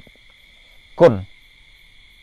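A pause in a man's speech. A single short spoken syllable, falling in pitch, comes about a second in, over a faint steady high-pitched whine.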